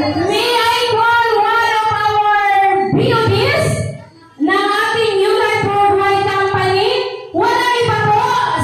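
A woman singing long held notes in phrases, with brief breaks about three and four seconds in and again near the end.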